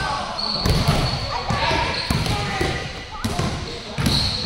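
Basketballs bouncing again and again on an indoor gym floor, several balls going at once in irregular thuds, with children's voices in the large hall.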